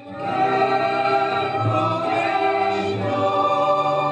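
Mixed choir singing a slow Argentine vidala with a small orchestra of violins and guitar. A new phrase swells in just after a brief break at the start, then holds steady.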